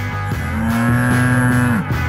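Guitar-led rock music with a steady bass line; near the middle a long, held note bends down in pitch as it ends.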